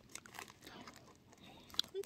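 Faint crinkling of the plastic wrap on a boxed retort curry as it is handled, with a few light clicks and a sharper click near the end.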